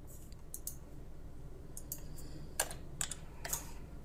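Light keystrokes on a computer keyboard: a scattering of separate, irregularly spaced key clicks over a faint steady low hum.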